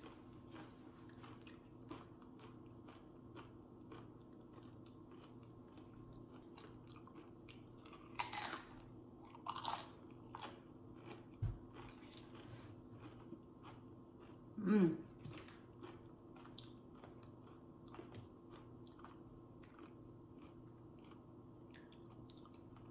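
Faint close-miked chewing and mouth sounds of a person eating: soft wet clicks throughout, with a few louder crunchy bursts around eight to ten seconds in.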